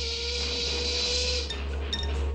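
Cartoon steam locomotive whistle: one long, steady blast with hissing steam, over a low rumble, cutting off about a second and a half in.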